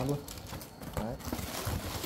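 Cardboard box of a frying pan being handled and lifted from a carton: faint rubbing and scraping of cardboard, with a couple of soft knocks about a second in.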